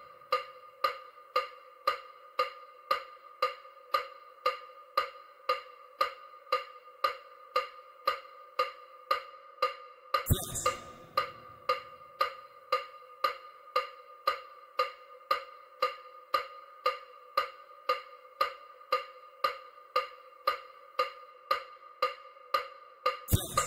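EMDR bilateral-stimulation track: short, pitched, wood-block-like electronic ticks in an even beat of about two a second. A louder, fuller strike comes about ten seconds in.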